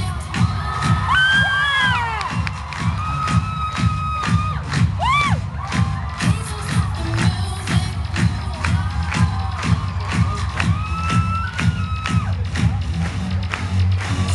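Loud dance music with a heavy kick drum on a steady beat about twice a second, under high-pitched screaming and cheering from an audience; single screams rise and fall over the music.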